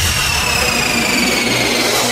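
DJ transition sweep in an electronic dance mix: a loud, jet-like rush of noise with a few thin tones gliding slowly down in pitch, and no beat under it.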